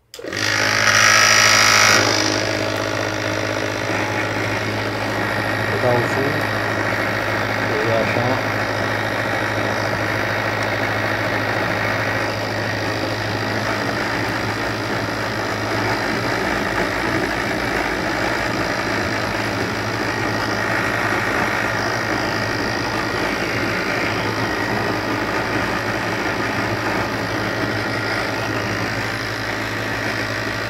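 Homemade multi-jet gas torch lighting with a sudden, loud rush of flame, then burning steadily with a rushing noise and a low hum underneath.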